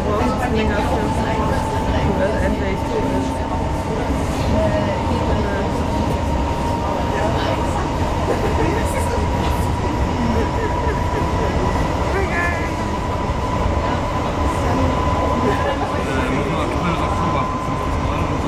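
Hamburg S-Bahn class 472 electric train running at speed, heard from inside the carriage: a steady rolling rumble under a thin whine that rises slowly in pitch.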